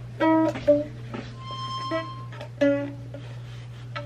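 A small 20-inch ukulele plucked slowly and haltingly by a beginner: about five separate notes at uneven intervals, each ringing briefly before the next.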